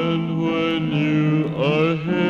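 A man singing a gospel song, holding a long note, then sliding up into the next note about a second and a half in.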